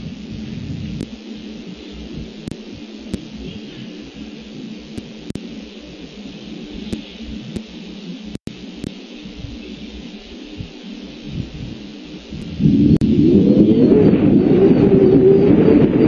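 Low, even background noise, then a loud, steady low rumble that starts suddenly about three-quarters of the way through.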